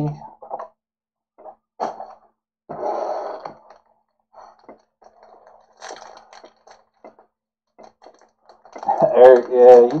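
Sparse rustles and taps of foil-wrapped trading card packs being handled on a table. A man starts speaking about a second before the end.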